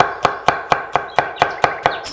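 Chef's knife chopping an onion on a wooden cutting board: a steady run of sharp knocks at about four to five strokes a second.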